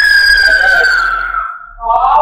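A woman's long, high-pitched cry, slowly falling in pitch, that fades out about a second and a half in; a second high cry starts near the end.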